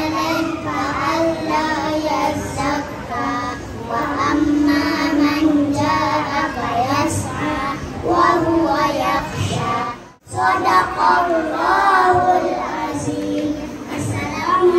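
Young children singing together into a handheld microphone, several held notes in a steady melody. The sound cuts out briefly about ten seconds in, then the singing resumes.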